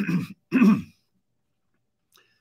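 A man clearing his throat in two short bursts.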